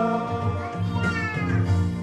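Church choir singing a hymn over a held instrumental accompaniment, with a voice gliding down in pitch about a second in.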